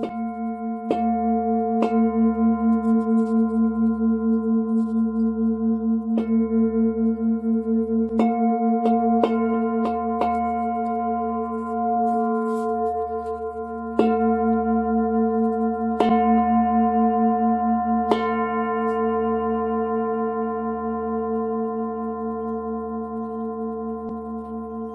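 A very large Tibetan singing bowl ringing with a deep, sustained hum and several higher overtones that waver and pulse, renewed by light strikes about every one to four seconds, most of them in the first half, before it slowly fades toward the end.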